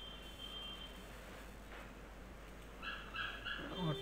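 Faint steady hiss and low hum of a quiet recording, with three short high-pitched tones close together about three seconds in.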